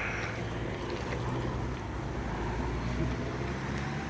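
A vehicle's engine running steadily with a low hum, a faint rising whine coming in over the last couple of seconds.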